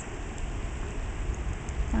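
Distant waterfall, the Upper Falls of the Tahquamenon River, heard as a steady, even rush of falling water with a low rumble underneath.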